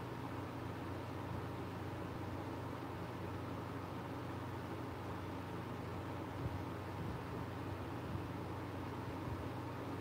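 Electric fan running steadily: a constant low hum with an even hiss.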